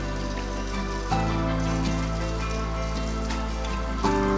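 Background music with sustained notes, under the sizzle and crackle of murukku dough deep-frying in hot oil.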